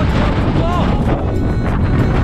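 Strong coastal wind buffeting the camera's microphone: a loud, dense rumbling roar.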